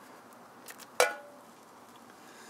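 A single sharp metallic clink of camp cookware about a second in, ringing briefly before it fades, with a couple of faint taps just before it.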